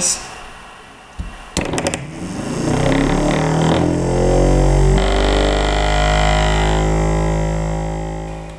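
Simple reed switch electric motor starting up: a few clicks as the batteries are pressed into the holder, then a buzzing hum that rises in pitch as the magnet rotor speeds up. About five seconds in the tone shifts and then holds steady at speed, starting to fade near the end.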